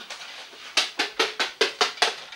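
A quick run of light clicks, about seven a second, starting about halfway through: a plastic toy figurine being tapped along the top of a video recorder as it is hopped into view.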